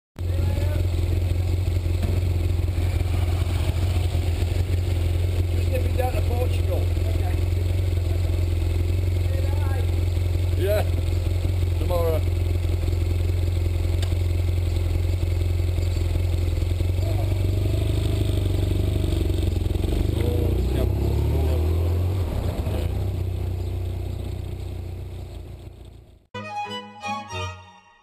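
Motorcycle engine idling steadily at the handlebars, its note shifting after about seventeen seconds as the bike pulls away and rides off, then fading out near the end.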